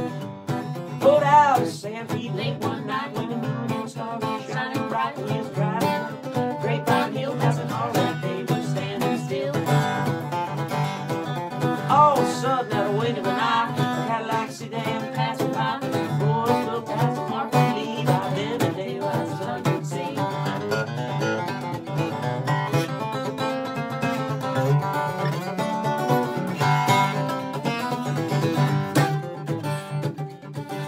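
Instrumental break of an uptempo country song played live: an acoustic guitar strums a steady, driving rhythm while a lead guitar plays a solo with bent notes.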